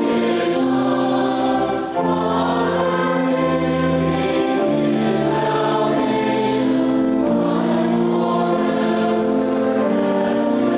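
A group of voices singing a hymn refrain in held notes over instrumental accompaniment, a new chord every second or so.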